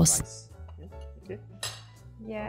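Light clinks of kitchenware, with one sharper clink near the end, over quiet background music.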